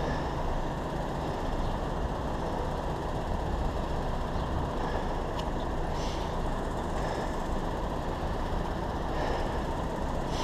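Steady low rumble of street traffic from a queue of cars, picked up by a helmet-mounted camera. A few short, faint high sounds come about halfway through.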